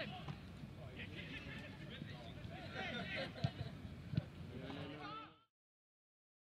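Distant shouts and calls of footballers on the pitch, with two sharp knocks about three and a half and four seconds in; the sound fades out to silence about five seconds in.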